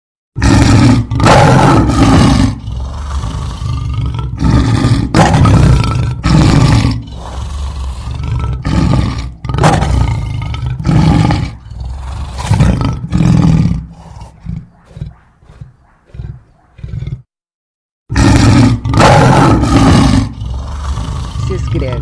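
A lion's roaring bout: a series of loud roars that taper into shorter, quieter grunts, then the bout starts over after about a second of silence near the end.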